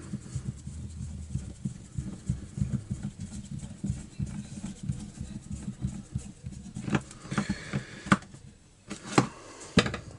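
Screws being driven by hand with a screwdriver into the plastic control handle of an Echo SRM-22GES trimmer: handling rustle with small irregular clicks and scrapes, then a few sharp knocks in the last three seconds.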